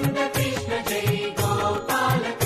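Indian devotional music: sustained melodic instruments over a steady beat of percussive strokes.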